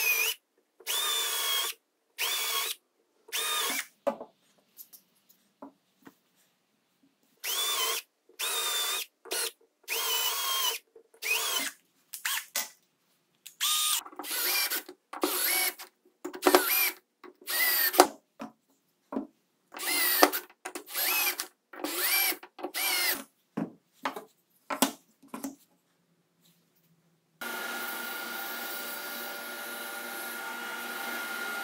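Cordless drill run in many short bursts, each spinning up with a rising whine, boring holes through a wooden drilling jig. Near the end a steady, even machine noise with a constant tone starts: a table saw running.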